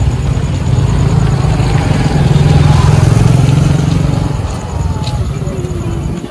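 A motor vehicle's engine running, swelling to its loudest in the middle and fading away about four and a half seconds in, as when a vehicle passes by.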